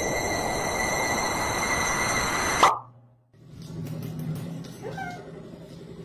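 CatGenie self-washing litter box running its cleaning cycle: a steady churning, watery noise with a constant electric whine. It cuts off abruptly about two and a half seconds in, leaving much quieter room sound.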